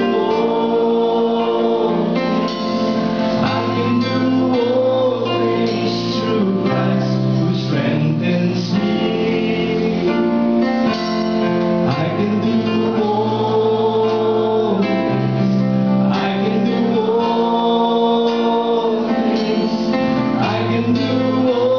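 Live worship band playing: a man sings the lead into a microphone in held phrases, backed by keyboard and electric guitars.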